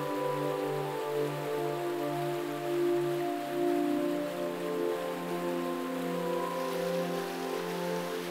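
Soft background music of sustained, slowly changing chords, shifting about halfway through, over the steady rush of river water.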